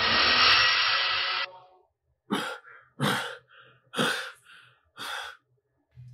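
A loud, steady rushing noise effect for about a second and a half, marking the ghost's vanishing, then a frightened man breathing heavily: four hard breaths about a second apart, each followed by a softer one.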